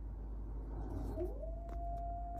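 A wolf howl played from a TV cartoon: one long call that slides up about a second in and is then held on one steady pitch.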